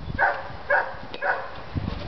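Dog barking three times, about half a second apart.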